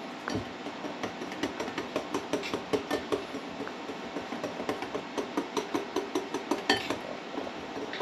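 Wire whisk beating a thick detergent and baking soda paste in a ceramic bowl, the wires clinking against the bowl's sides in quick, steady strokes of about three or four a second.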